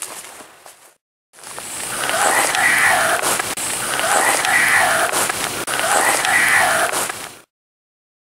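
Amplified playback of a ghost box app's faint, garbled voice response, taken as 'I'm here', repeated three times over heavy hiss. It starts about a second in after a brief dead gap.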